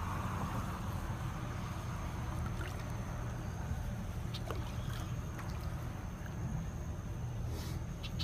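Faint water lapping and small splashes as a small flathead catfish is handled at the surface, with a few soft drips or ticks. A steady low hum and a thin steady high tone run underneath.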